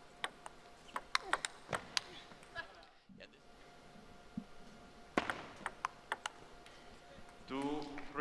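Plastic table tennis ball clicking off rackets and table in a rally: a run of sharp clicks a few tenths of a second apart that stops about three seconds in. About five seconds in, a second short run of clicks follows.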